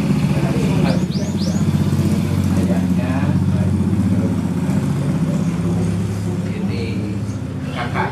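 A steady low engine hum, like a motor vehicle running, with faint voices underneath; three quick rising chirps about a second in.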